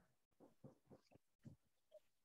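Near silence, broken by about six faint, brief squeaks of a marker writing on a whiteboard.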